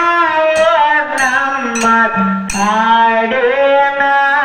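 Live Kannada dollu folk song (dollina pada): one voice singing a long, wavering melodic line, accompanied by sharp percussion strikes about every 0.6 seconds.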